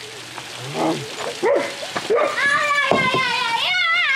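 A young child's high-pitched voice squealing without words, in long wavering cries through the second half.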